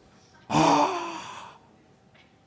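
A man's voice letting out a loud, breathy wordless sigh about half a second in, fading away over about a second.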